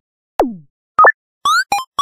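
Synthesized cartoon sound effects: a falling-pitch drop about half a second in, a short two-note blip about a second in, then a quick rising chirp with two short beeps, starting again at the end.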